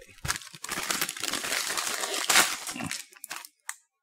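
A crinkly plastic snack bag of Umaibo Sugar Rusk rings crackling as it is shaken and handled for about two and a half seconds, followed by a few brief crinkles.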